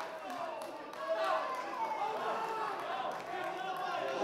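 Pitch-side sound at a small football ground: several voices of players and spectators shouting and calling over one another.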